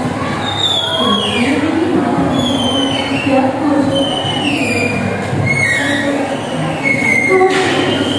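Overlapping chatter of many students talking at once in a classroom, with a run of high squeals, each sliding down in pitch, coming about once a second.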